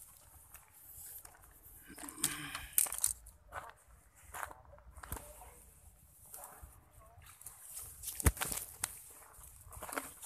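Scattered rustling and knocking from gear being handled, with a sharp knock about eight seconds in and a few brief vocal sounds.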